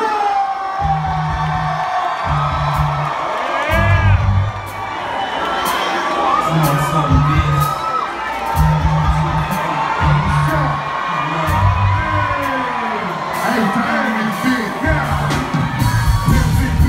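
A concert crowd cheering, whooping and shouting while the band plays deep bass notes in separate stretches a second or two long.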